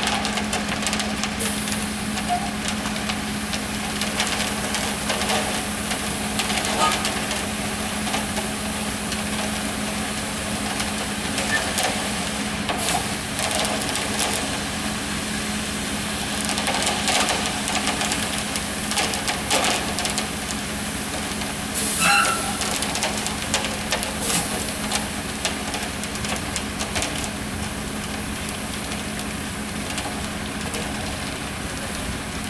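Concrete mixer truck running steadily with a low hum while it discharges concrete down its chute, with scattered short scrapes and knocks from the work around it.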